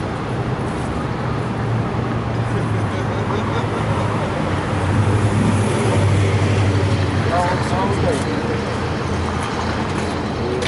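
City street traffic running steadily, with a vehicle's low rumble swelling to its loudest about five to six seconds in and then easing off; faint voices underneath.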